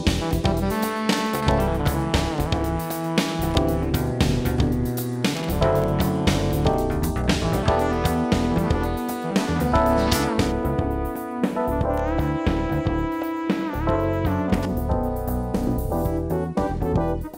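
A recorded instrumental band track playing through a Trident A-Range preamp/EQ while its high-pass filters are being adjusted, so the track's tone is being reshaped. The top end thins out about ten seconds in.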